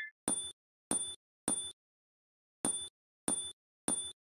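Six short, high dings in two groups of three, about half a second apart, over dead silence. They are an edited-in sound effect.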